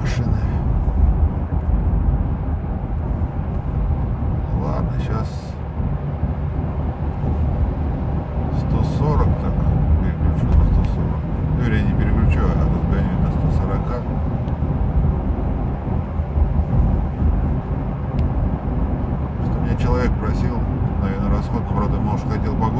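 Steady, low drone of a Toyota Land Cruiser Prado 150's 2.8-litre turbodiesel and its tyres on the road, heard inside the cabin while cruising at highway speed in top gear.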